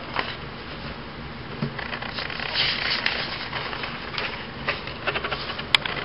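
Sheets of drawing paper rustling and sliding as they are handled, with a few light clicks and a sharp tap near the end.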